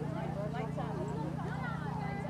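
Indistinct voices of people talking, over a steady low hum, with the dull hoofbeats of a horse cantering on turf.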